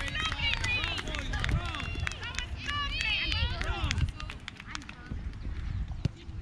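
Children's high voices shouting and calling on a soccer field, one shout of a name, "Reed!", among them; the shouting thins out after about four seconds. A low rumble runs underneath.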